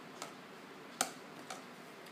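Scissors snipping the excess off a ribbon: three short, sharp clicks, the loudest about a second in.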